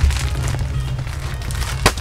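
Stock being rummaged and handled: a run of light clicks and rustles, with one sharp click near the end.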